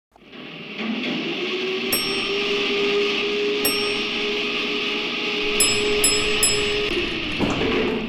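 Intro sound design for the video: a sustained airy electronic swell with a held tone, fading in, crossed by a few sharp bright chime-like hits, two spaced apart and then three in quick succession. It gives way to electronic music near the end.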